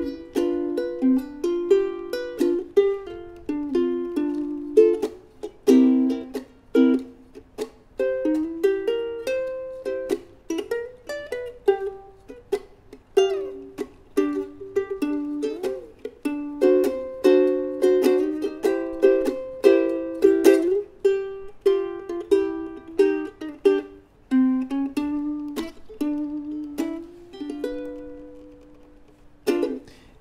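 Ukulele strumming a 12-bar blues in G, chord after chord, with a few sliding notes. The last chord is left ringing near the end.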